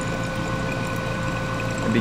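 Liquid poured in a steady stream into a glass Erlenmeyer flask, over a constant electrical hum of lab equipment.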